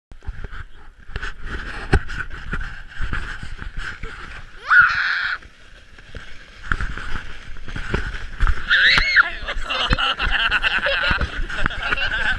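Plastic sled sliding downhill over snow: a steady scraping hiss broken by frequent bumps and knocks. A high rising squeal comes about five seconds in, and a laughing cry near nine seconds as the riders giggle on the way down.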